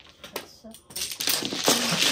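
Mahjong tiles clattering as players push them together and shuffle them on the table: a few scattered clicks at first, then a dense, continuous rattle of tiles knocking together from about a second in.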